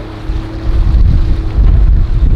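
Wind buffeting the microphone in a loud, uneven low rumble, over the steady note of a small Honda outboard motor pushing an inflatable boat through chop.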